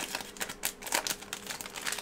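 Select football trading cards being thumbed through by hand, a run of irregular clicks as each card is pushed off the stack.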